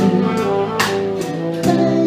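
Live jazz band playing, with keyboard and saxophone holding sustained notes and two sharp percussion hits, one a little before halfway and one near the end.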